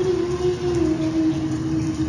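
A voice singing one long held note that slowly slides down in pitch and fades toward the end, over the steady hiss of heavy rain.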